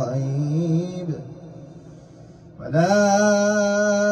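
A male reciter chanting the Quran in melodic tajwid style. A long, wavering note fades out about a second in, then after a short pause a new phrase begins on a higher, steady held note.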